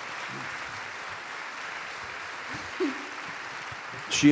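Audience applauding steadily, with a short voice calling out near the end.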